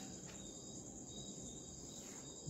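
A faint pause with a steady, high-pitched whine in the background, made of two thin unchanging tones.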